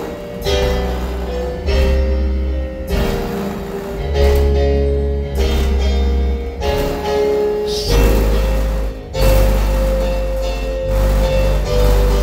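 Music played loud through a car's bass-heavy audio system during a bass test: long, very deep bass notes that change every second or two, with short gaps, under a steady melody line.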